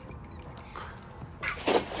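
A cast net being swung and thrown: a faint rustle of the mesh about a second in, then a louder swish as the net and its lead line are flung out near the end.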